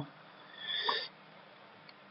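A single short breath or sniff into a close microphone, starting about half a second in and lasting about half a second. Faint room tone otherwise.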